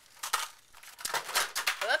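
Plastic blister packaging of craft products being handled on a table: a couple of sharp clicks, then a second or so of crinkling and clattering. A short rising exclamation follows at the very end.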